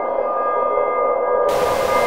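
Ambient drone of several sustained steady tones, with a burst of hissing static cutting in about three-quarters of the way through.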